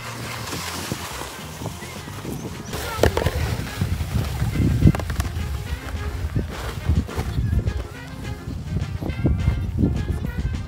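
Background music with a held, stepping bass line.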